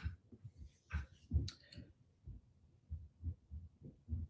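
Faint, irregular soft thumps with a few short clicks, a few a second, picked up close to the microphone.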